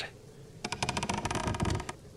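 Creak of old wooden floorboards: a rapid run of small clicks starting about half a second in and lasting just over a second.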